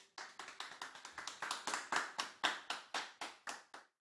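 A few people clapping in a small studio, about six claps a second, getting louder and then tailing off.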